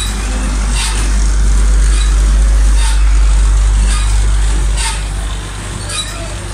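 A loud, steady low rumble starts suddenly and runs on, easing a little near the end, with a short hiss about every two seconds from the funhouse attraction's machinery.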